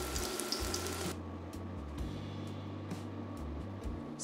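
Hot oil sizzling and bubbling around potato wedges shallow-frying in a wok. The sizzle cuts off abruptly about a second in, leaving only a faint low background.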